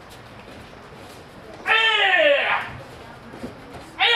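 A person's high, drawn-out cry, falling in pitch and lasting under a second, about halfway through, as the knife attacker is taken down in a self-defence demonstration.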